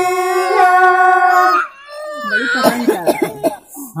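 Group of voices singing a Bagheli sohar folk song, holding one long steady note that breaks off about a second and a half in. After a brief lull, wavering voices follow.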